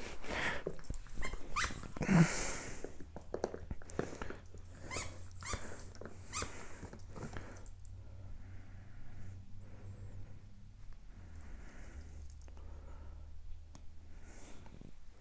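A puppy's small play noises as it plays with a spiky rubber ball. Short clicks and rustles come mostly in the first half, then it goes quieter.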